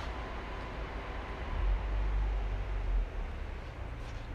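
Low rumble with an even hiss behind it, swelling about a second and a half in and easing off near the end; no engine is running.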